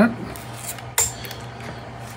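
A single sharp click about a second in, with a few faint ticks before it, over a low steady hum.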